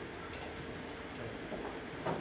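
A quiet room with a steady low hum and a few faint, uneven ticks.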